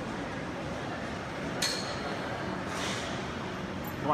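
Gym room noise with a sharp metallic clink of weights about one and a half seconds in, ringing briefly, and a fainter clink near three seconds.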